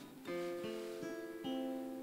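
Soft acoustic guitar background music, with plucked notes ringing on and new notes coming in about a quarter second in and again about one and a half seconds in.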